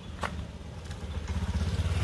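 A motorcycle engine running close by, a low rumble that grows louder toward the end as the bike approaches, with a single sharp click about a quarter second in.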